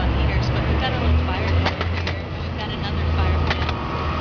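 A steady low rumble, like a motor vehicle running nearby, with indistinct voices in the background.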